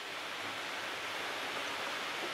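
Steady hiss of background noise, with no speech or distinct events: room tone and recording hiss.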